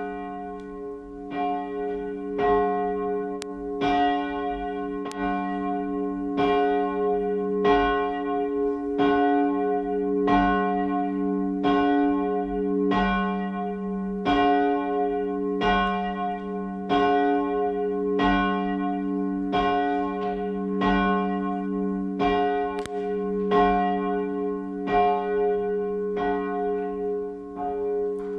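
A church bell tolling slowly and evenly, one stroke about every 1.25 seconds, its low hum carrying between strokes: a knell for the dead of the parish whose names have just been read.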